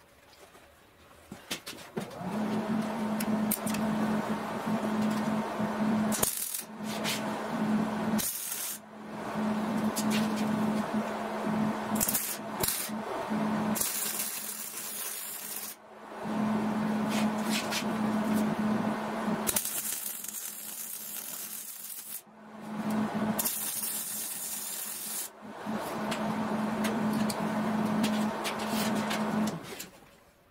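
Wire-feed (MIG) welder laying a series of short beads on steel, a crackling, frying arc over a steady low hum. There are about eight or nine runs of a few seconds each, broken by brief pauses.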